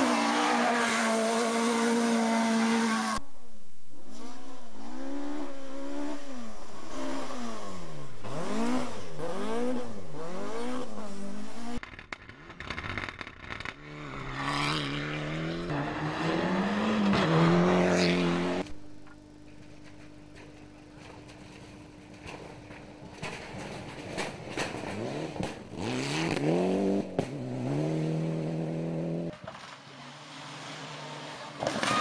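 Four-wheel-drive rally cars driving hard on a dirt stage, one after another. Their engines rev up and fall back again and again through the gear changes. Over the last third the engines are quieter and further off.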